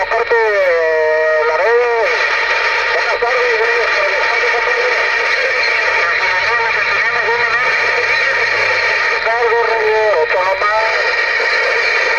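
Galaxy DX 33HML CB radio receiving a transmission: garbled, distorted voices come through a steady wash of static, with voice fragments near the start and again late on.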